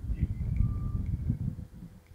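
A low, uneven rumble that fades out near the end, with a faint thin tone partway through.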